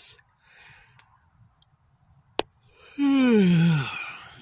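A man's long voiced sigh, falling in pitch over about a second near the end, after a soft breath and a single click a little past the middle.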